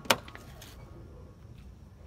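A single sharp click just after the start, followed by a few lighter clicks: a car door latch releasing as the door of a Daihatsu Ayla is pulled open.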